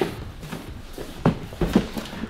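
A large cardboard box holding a heavy radiator being carried and handled, with a few short, soft knocks and scuffs of the cardboard, one about a second in and a couple more shortly after.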